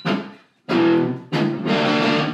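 Gibson SG electric guitar strummed: one short chord, then two longer ringing chords about a second in. The guitar is a little out of tune and not yet tuned.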